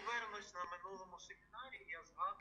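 Speech only: a voice keeps talking, quieter than the surrounding speech.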